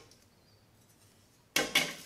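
Stainless-steel grill grate being set down on a steel grease tray: two sharp metal clatters near the end.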